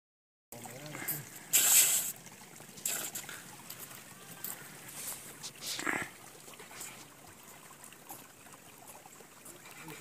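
Shoes crunching and scraping on crusted ice and frozen snow in a few irregular steps. The loudest scrape comes about a second and a half in, with others near three and six seconds. Faint voices in the background.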